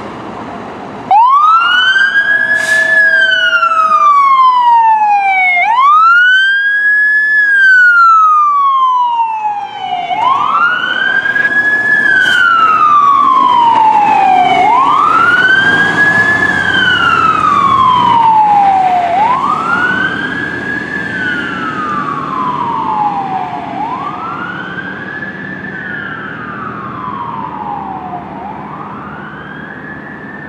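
Fire truck siren on a wail, starting about a second in: repeated cycles, each a quick climb and a slower fall, about every four to five seconds, fading as the truck drives away.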